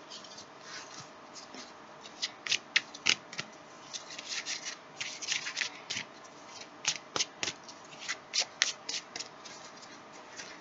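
A deck of tarot cards being shuffled by hand: an irregular run of short, crisp card-on-card slaps and flicks, sparse at first and coming thick and fast from about two seconds in.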